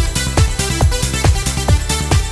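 Electronic dance track with a steady kick drum on every beat, a little over two beats a second, under sustained synth chords and bass, with no vocals.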